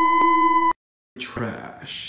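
A synthesizer music drone of steady held tones, with a tick about twice a second, cuts off suddenly under a second in. After a short silence, the rustling handling noise of a handheld phone recording begins.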